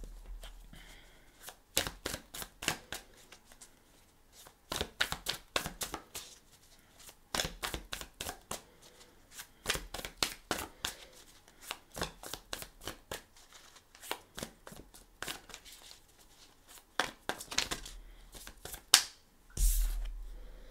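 Tarot cards being shuffled by hand: clusters of quick papery card clicks come and go, with one louder snap of the cards shortly before the end.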